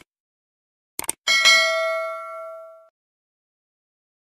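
Subscribe-button animation sound effect: two quick clicks about a second in, then a bright bell chime that rings on and fades away.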